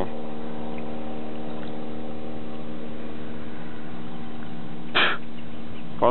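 A steady mechanical hum at one constant pitch, running evenly without change, with one brief sharp sound about five seconds in.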